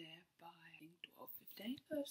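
Only speech: a young woman talking quietly, her words unclear.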